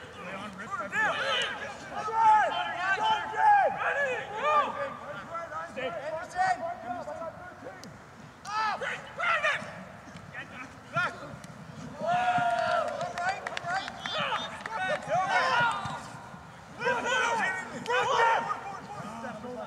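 Men shouting during a rugby match: several voices calling and yelling across the pitch, overlapping in bursts, with no clear words.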